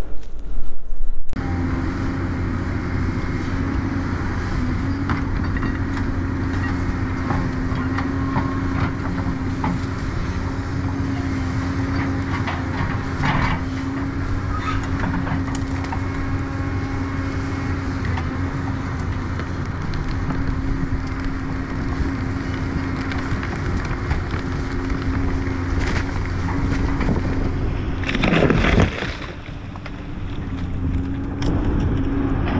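Tracked hydraulic excavator's diesel engine running steadily under working load, with a few light knocks. Near the end there is a short louder rush of noise and the level drops.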